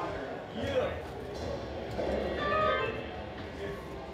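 Indistinct talk of several people in a room, with a brief snatch of music or instrument notes in the middle.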